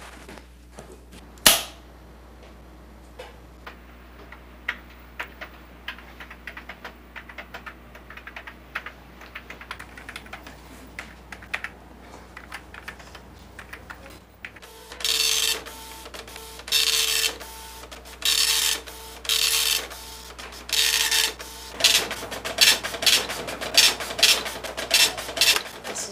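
A sharp click about a second and a half in, then keys on a computer keyboard being typed in an irregular run of clicks. Then a dot-matrix printer prints in loud bursts of about a second each, with a steady buzz, and the bursts turn quicker and choppier near the end.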